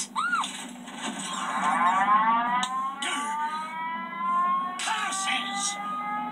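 Air-raid siren winding up from a film soundtrack, its pitch rising slowly over several seconds and then holding, heard from a television speaker through a camera's microphone.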